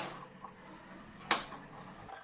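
Wooden spoon stirring thin curry in a clay pot, knocking sharply against the pot twice, at the start and again a little over a second later, with faint stirring between.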